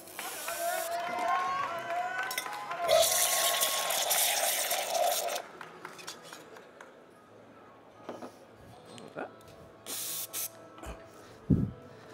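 Espresso machine steam wand hissing as it warms the Irish coffee's whisky and sugar in a jug, with a wavering whistle over the hiss; it grows louder about three seconds in and cuts off at about five and a half seconds. A few short knocks follow near the end.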